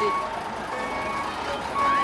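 A vehicle's reversing alarm beeping, one steady high beep about every second.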